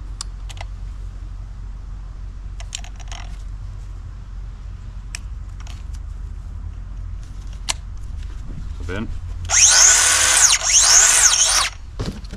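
DeWalt 20V MAX XR brushless 3-inch cut-off tool triggered with no load, its wheel spinning free for about two seconds with a high whine that glides in pitch, then cutting off.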